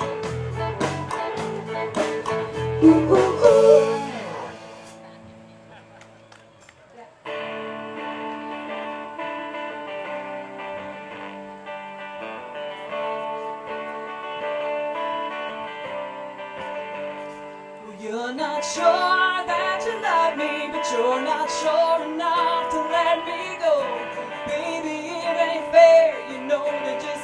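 Live band music on guitars, bass and drums: a song ends with a full-band finish that dies away. About seven seconds in, a softer passage of held chords starts abruptly, and singing comes in around eighteen seconds.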